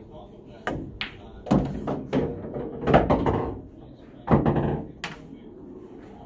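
Pool cue striking the cue ball and billiard balls clacking together and knocking against the table's rails: a string of sharp knocks over about five seconds.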